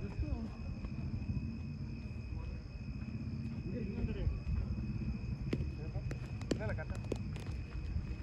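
Low, steady rumbling background noise with a thin, steady high tone over it, faint distant voices, and a few sharp knocks in the second half.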